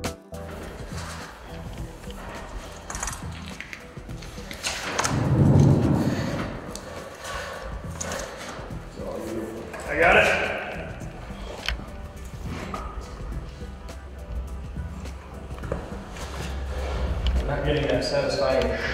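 Workshop handling noise: scattered knocks and clicks from hands working cables and metal rack hardware, with two louder bumps about five and ten seconds in and indistinct voices.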